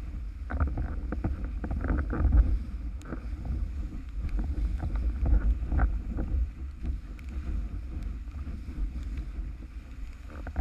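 Windsurf board planing fast over choppy water in gusty wind: a heavy, steady wind rumble on the microphone with irregular slaps and splashes of water against the board.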